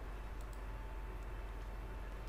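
A few faint computer mouse clicks over a steady low background hum, as the File menu and Save As are clicked.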